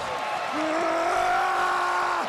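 Arena crowd cheering, with a man's long drawn-out yell starting about half a second in and held at one pitch: a wrestler shouting, fired up after a dive to the floor.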